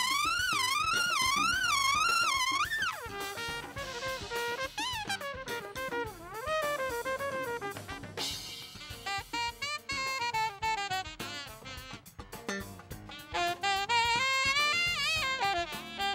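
Live jazz band: a trumpet solo opens with wide, fast shakes on a high note for about three seconds, then goes on in quick running lines of horn notes over a drum kit and hand drums.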